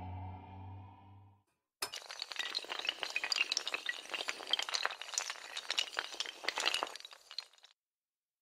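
Clatter of toppling dominoes in an animated intro: a dense, rapid run of small, high-pitched clicks that starts suddenly about two seconds in and stops just before the end. Before it, a low held music chord fades out.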